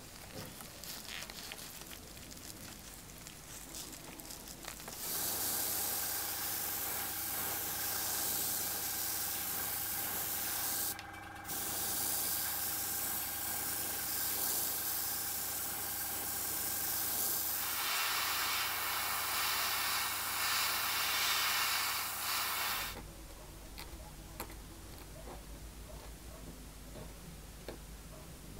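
A steady hissing spray with a low hum under it starts about five seconds in. It breaks off for a moment near the middle and stops about five seconds before the end.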